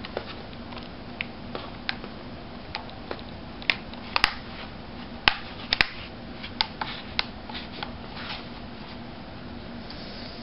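Scattered light clicks and taps from hands pressing and handling the plastic display bezel and glass touch panel of an Asus Eee PC 901 netbook. The sharpest clicks come in a cluster in the middle, over a steady low hum.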